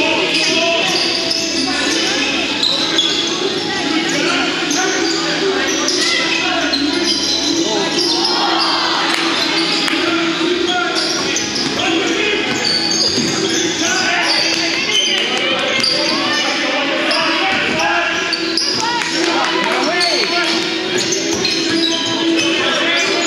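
Live basketball play on a hardwood court in an echoing gym: the ball bouncing, sneakers squeaking in short high chirps, and players and spectators calling out, over a steady low hum.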